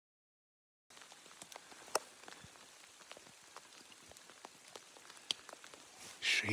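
Silence for about the first second, then steady rain falling, with many individual drops ticking close by and a couple of sharper, louder drop hits.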